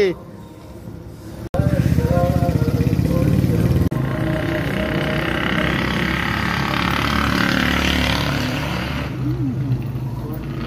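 Street traffic: a motor vehicle's engine running close by starts loudly about a second and a half in, then gives way to a steady hiss of passing traffic.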